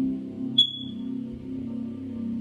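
Ambient background music of low sustained tones. About half a second in, a single short, high-pitched chirp rings out and fades quickly, a faulty smoke alarm chirping.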